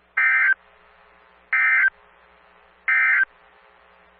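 Three short, identical buzzing electronic data bursts, about a second apart, closing the broadcast. They have the form of the Emergency Alert System (SAME) end-of-message tones that follow a weather warning.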